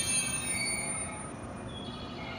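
A green electric train's wheels and brakes squealing in several high steady tones over a low rumble as it slows into the station platform, the squeal fading about halfway through.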